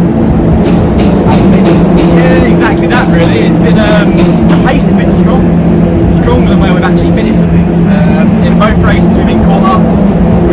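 Formula 4 single-seater race cars running on the circuit, a loud steady engine drone from several cars under a man's voice.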